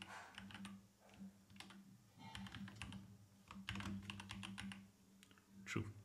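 Typing on a computer keyboard: faint key clicks in short quick runs with brief pauses between them.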